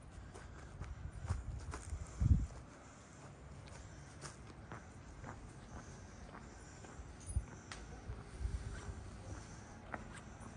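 Footsteps walking on a concrete sidewalk, with scattered light clicks and a few short low thumps, the loudest about two seconds in.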